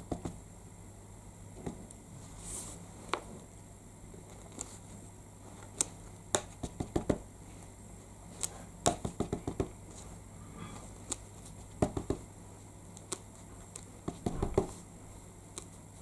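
Papercraft handling at a desk: light taps and clicks of an ink pad dabbed onto a rubber stamp, and card and paper being moved and pressed, in scattered quick clusters over a faint steady hum.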